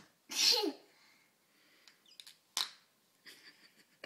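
Noise putty squelching in its plastic tub as a child presses it: a loud squelch about half a second in that drops in pitch, then a shorter one later, with small clicks between.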